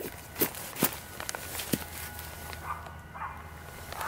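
A knife blade shaving curls off a wooden stick, with four sharp strokes about half a second apart in the first two seconds. After that come softer rustles in dry leaf litter.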